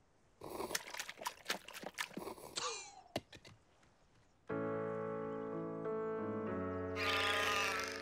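Cartoon soundtrack. First a quick run of clicks and clunks, then from about halfway slow, held sad music chords. A crying, wailing voice comes in over the chords near the end.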